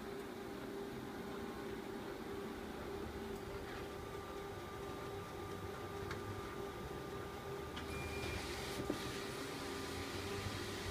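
Konica Minolta bizhub C754 multifunction printer running as it starts printing a banner fed through the bypass tray: a steady hum with a constant tone, and a few faint clicks.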